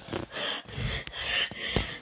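A person breathing in quick, noisy gasps, with a few small clicks from a handheld phone.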